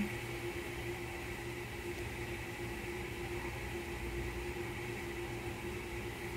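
A steady mechanical hum with a faint, even high whine, unchanging throughout.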